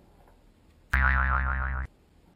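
A loud, pitched sound effect with a wobbling tone. It starts suddenly about a second in and cuts off abruptly just under a second later.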